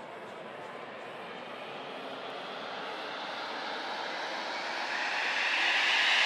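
White-noise riser in an electronic dance track's breakdown: a rushing hiss with no beat that swells steadily louder and climbs in pitch, building toward the next section.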